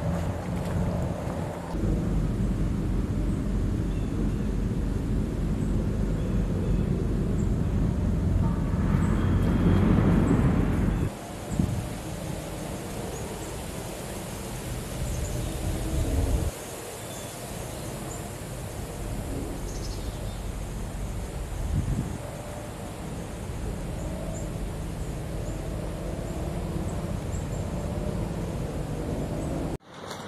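Wind on the microphone outdoors, a steady low rumble, loudest in the first third and dropping abruptly about eleven seconds in, then stepping quieter again twice.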